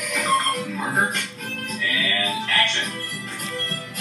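Film soundtrack playing from a television's speakers: music with character voices in between.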